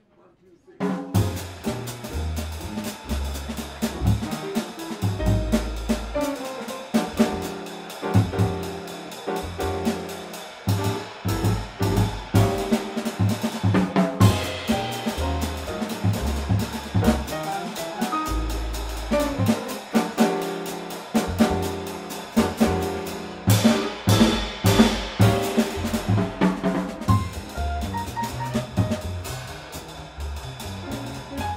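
Live jazz piano trio playing: acoustic grand piano, upright double bass and drum kit, with the band coming in together abruptly about a second in.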